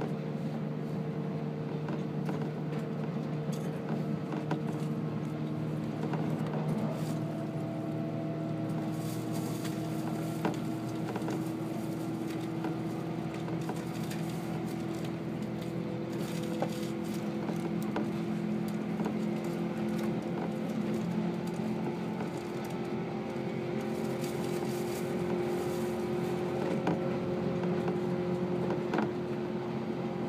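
Running noise heard inside a 185-series electric train at speed: a steady hum whose pitch slowly rises, with scattered light clicks.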